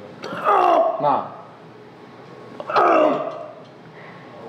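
Two reps on a belt squat machine about two seconds apart, each marked by a drawn-out creaking sound that falls in pitch, the first near the start and the second about three quarters of the way through.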